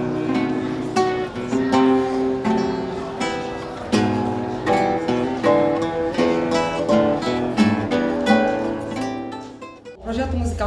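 Several acoustic guitars playing a seresta serenade together, with plucked melody notes over chords. The music fades out near the end.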